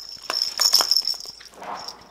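A noise-making cat toy jingling and rattling as it is lifted and shaken inside its crinkly plastic bag. A high ringing note runs under a scatter of small clicks and crinkles, thinning out near the end.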